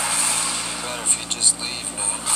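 Movie trailer soundtrack coming from a portable DVD player's small built-in speaker, with two sharp hits a little after a second in.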